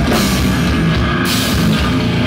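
Live brutal death metal band playing loud and dense: distorted electric guitar, bass guitar and a drum kit.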